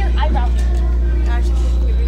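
Indistinct young voices in brief bits of talk or exclamation, over a constant low hum.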